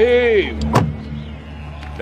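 A car engine idling with a steady low hum, a brief pitched, voice-like sound at the very start, and a single sharp click a little under a second in.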